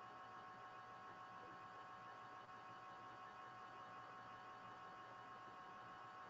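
Near silence: a faint steady hum with a thin whine and low hiss.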